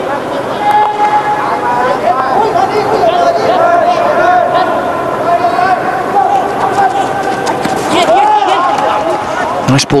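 Many overlapping voices shouting and chanting continuously, some calls held long, with a few sharp knocks near the end.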